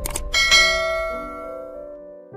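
A short click, then a bright bell chime struck once about a third of a second in, ringing with several tones and fading away slowly: a notification-bell sound effect.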